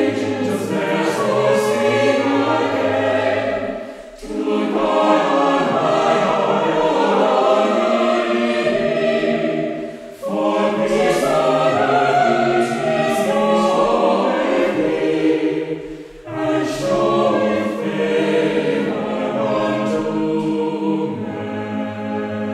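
A mixed choir of men and women singing an early-seventeenth-century English anthem in full harmony, in long phrases with short breaks between them about every six seconds.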